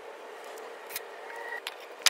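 Steady outdoor background hiss with two short, light knocks: one about a second in and another just after it.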